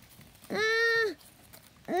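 A high-pitched voice gives one short held vocal sound, about half a second long, a little way in; otherwise only faint background hiss.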